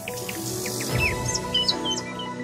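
Animated news-intro sting: jingle music with a rushing whoosh, a low hit about a second in, and short bird-like chirps over it.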